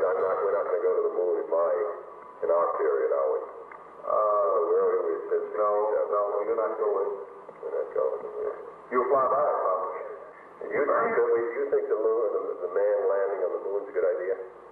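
Men talking on an old, low-fidelity tape recording from 1963: narrow, tinny voices with the lows and highs cut off, in back-and-forth conversation with short pauses.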